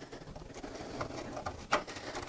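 Faint small clicks and scrapes of a small screw being turned by hand into a 3D-printed plastic belt tensioner, with a couple of sharper ticks about one second in and near the end.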